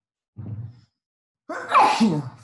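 A brief low murmur, then about one and a half seconds in a man's loud, breathy sigh whose pitch falls steeply.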